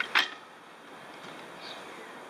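A single sharp click as the front wheel of a road bike is set into the fork dropouts, rested there without the quick-release closed. After it comes a faint steady background hiss.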